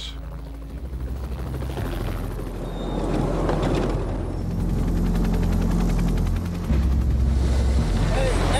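Helicopter rotor noise, a fast fluttering rumble, over a deep steady drone that shifts pitch in steps and grows louder partway through.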